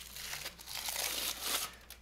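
Crumpled aluminium foil crinkling and tearing as it is pulled off a wine bottle by hand, an irregular crackle that dies down near the end.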